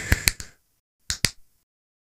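Sound effects of an animated logo intro: a whoosh fading out under three sharp clicks in quick succession, then two more sharp clicks about a second in, followed by silence.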